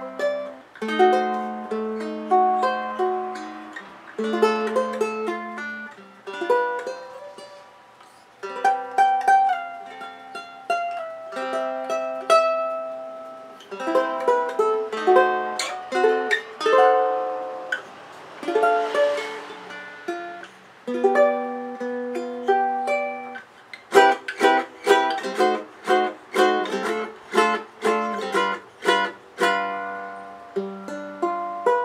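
Mele jumbo tenor ukulele with a koa top and mahogany back and sides, played fingerstyle: plucked melody notes and chords that ring and fade. Near the end comes a quicker run of short, sharp strummed chords, about four a second.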